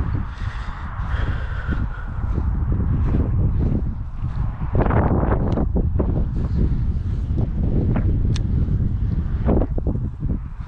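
Wind buffeting the microphone, a steady low rumble, with scattered short rustles and knocks.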